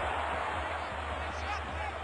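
Low, steady background noise with a constant low hum and no distinct event, and a faint far-off voice near the end.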